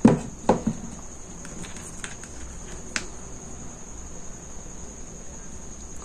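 Soft handling sounds from craft materials being worked by hand, a ribbon pressed into a pompom with hot glue: two sharp clicks at the start and a few fainter clicks later, over a steady faint high hiss.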